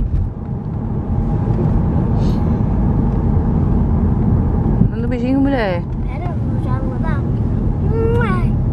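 Steady low road and engine rumble heard inside a moving car's cabin. A high voice rises and falls briefly about five seconds in.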